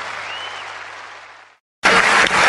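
Audience applause at the end of a live rockabilly track, fading away into a moment of silence. Loud guitar music then starts abruptly near the end as the next track begins.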